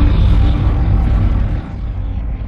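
Deep, steady rumbling drone of cinematic trailer sound design, dropping in level about one and a half seconds in.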